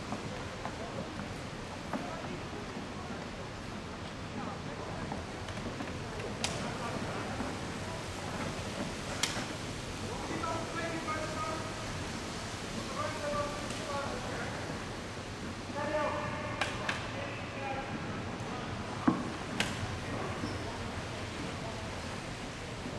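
Reverberant indoor velodrome sound: a steady rush from a pack of track bikes circling the wooden boards. Distant voices call out several times around the middle, and there are a few sharp clicks.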